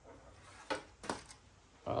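A few light clicks and taps as a wiring harness with plastic connectors is handled, over faint room noise.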